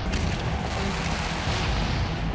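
A sudden boom that opens into a steady rushing roar with heavy deep rumble: stadium pyrotechnic flame jets firing.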